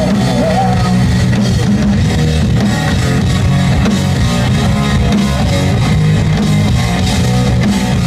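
A rock band playing live, electric guitars and drum kit, in a loud instrumental passage with no vocals, heard from the audience in the venue.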